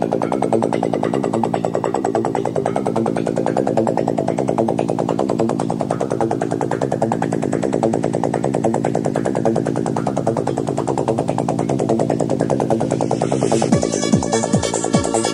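Electronic dance music from a 1990s DJ set, in a breakdown without a kick drum: a fast, evenly repeating synthesizer pattern. A hissy sweep rises near the end.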